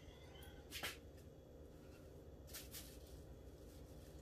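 Near silence with a low room hum, broken by two faint, brief rustles, about a second in and again near three seconds, from a banana being peeled by hand over a plastic bag.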